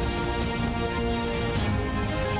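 Television news opening theme music: sustained synthesized notes over a steady beat.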